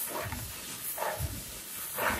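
Hands working through unhusked rice grains in a woven plastic sack: soft, scattered rustling of grain and crinkling of the sack.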